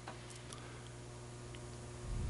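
Quiet room tone: a steady low hum with a few faint, irregularly spaced clicks.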